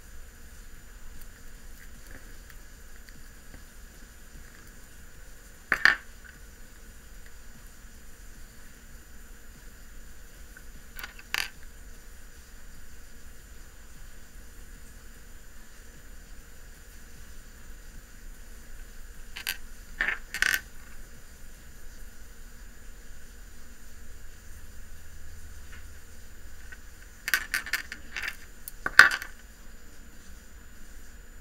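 Glass beads clicking as they are handled and strung on a cord: a few sharp, separate clicks about six and twelve seconds in, a pair around twenty seconds, and a cluster near the end, the last of which is the loudest.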